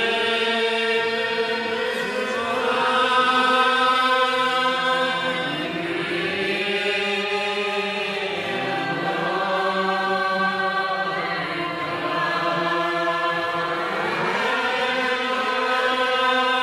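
Background music of a chanted vocal line: voices hold long, drawn-out notes that slide slowly between pitches, with no beat standing out.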